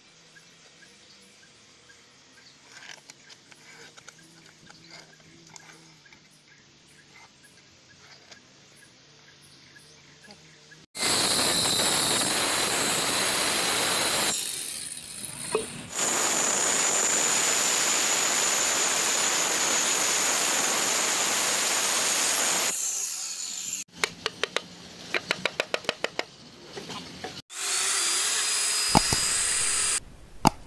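Handheld electric circular saw cutting through a wooden board, loud and steady, in two long runs with a brief drop in between, starting about a third of the way in. A string of sharp knocks follows, and then the saw cuts again near the end. The start is quiet, with only faint workshop sounds.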